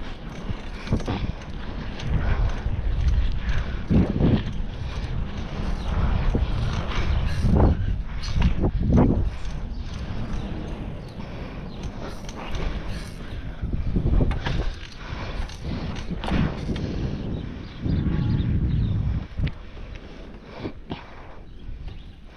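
Wind buffeting the microphone and the rumble of a bicycle rolling along paved streets, with irregular knocks and rattles from bumps in the road.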